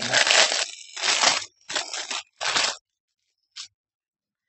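Wrapping crinkling and tearing in four short bursts as a packaged beanie is opened by hand, followed by a faint click near the end.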